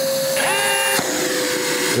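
Milwaukee M18 backpack vacuum (0885-20) running with a steady whine, pulling dust through a dust cup on a hammer drill boring into a wall. A second, higher motor tone from the drill cuts off with a click about a second in, while the vacuum keeps running.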